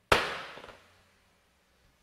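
An auctioneer's gavel struck once, a sharp knock that rings briefly and dies away within about half a second, marking the lot as sold.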